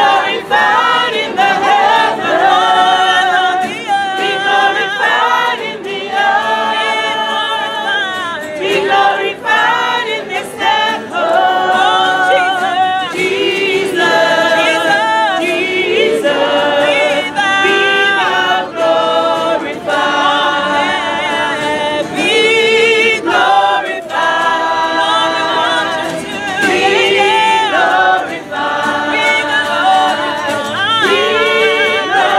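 Gospel choir singing a Christmas carol together, in phrases of long held notes.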